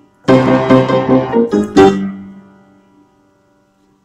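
A 1940s upright piano being played: a quick series of struck chords starting about a quarter second in, the last and loudest near two seconds, then ringing away. The piano is not in tune.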